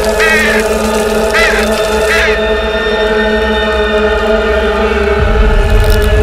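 A sustained, chant-like drone of horror film score, with three short crow caws over it in the first couple of seconds. A deep low rumble swells in about five seconds in.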